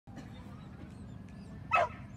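A dog barks once, briefly, near the end, over a steady low background noise.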